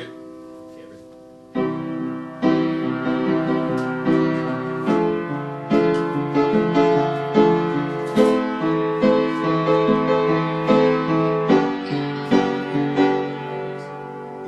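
Keyboard played with a piano sound: a run of chords and single notes that begins about a second and a half in, each struck and left to fade, trailing off near the end.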